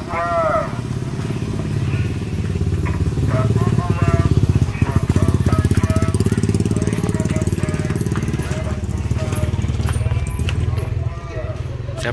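A motorcycle engine running close by, a steady low rumble with a fast even pulse that grows louder in the middle, with brief snatches of voices over it.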